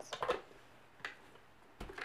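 A few faint clicks and a soft thump near the end as a plastic toy blender is handled: the lid taken off and the blender moved across the table.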